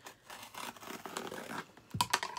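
A mailing package being torn and cut open: a run of irregular rasping, ripping sounds, with a sharp click near the end.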